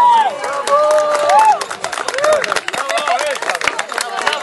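A group of men whooping and shouting in celebration, with long drawn-out calls, then a quick run of claps in the second half.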